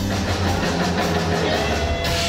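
Live rock band playing, with electric guitars, bass and drum kit; a low bass note is held steadily through.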